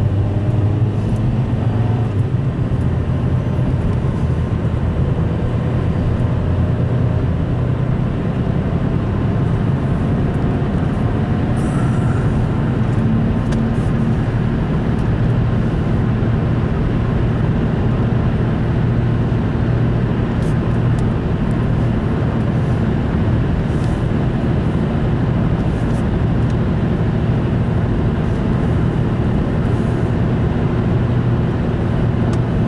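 Steady road and engine noise inside a car cruising at highway speed: tyre roar with a low, even engine hum.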